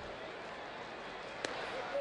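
Steady ballpark crowd noise, then, about one and a half seconds in, a single sharp pop of a pitched fastball, clocked at 94 mph, smacking into the catcher's mitt for a called strike.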